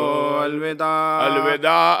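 A man's voice chanting an Urdu elegy in long, wavering melodic phrases, broken by short breaths about a second in and again near the end, over a steady low held note.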